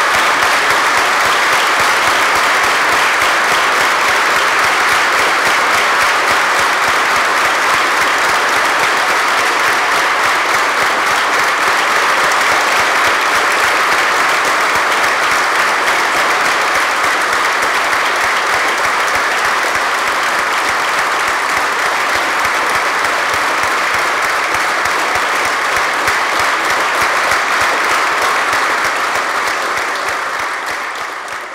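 A large crowd giving a standing ovation: dense, loud, steady applause that begins to die down right at the end.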